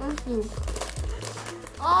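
Plastic marshmallow bag crinkling as a marshmallow is taken for the Chubby Bunny game, with a brief bit of voice early on.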